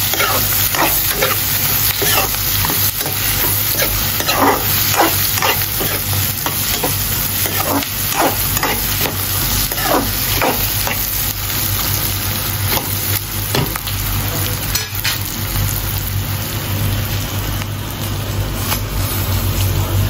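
Sliced onions and bay leaves sizzling in hot oil in an iron kadai, with a steel spoon scraping and stirring against the pan. The scrapes come often in the first half and thin out later, over a steady low hum.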